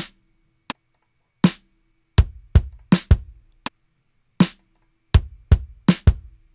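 Sampled acoustic drum kit from Toontrack EZdrummer 3, kick drum and snare hits played one at a time in an uneven, tapped-in pattern, about a dozen hits.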